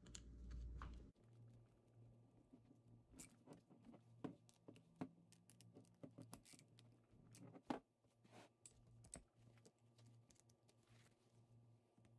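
Faint, irregular small clicks and taps of a screwdriver and a socket turning bolts to tighten them through a canvas bag, over a faint steady hum.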